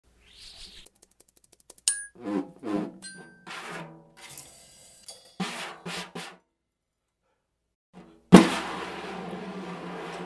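Percussion sound effects played on a drum kit: scattered taps and thuds on a snare drum struck with a mallet and a brush, with a couple of short ringing pings, then after a pause a sudden loud hit about eight seconds in that runs into a sustained drum roll.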